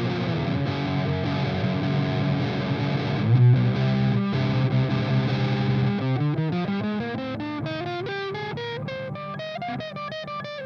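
Kadence Astroman electric guitar on its bridge pickup, through a Revv amp's red high-gain channel, playing heavily distorted riffs and held chords. About six seconds in it moves to fast picked single-note lead lines. The guitar has been knocked out of tune.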